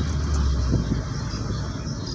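Small Hyundai hatchback heard from inside the cabin while driving: steady engine hum and road noise. The low hum drops away about a second in as the clutch goes down for a gear change.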